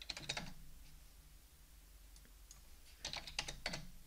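Faint keystrokes on a computer keyboard, typing a number into a field, in two short bursts: one at the start and one about three seconds in.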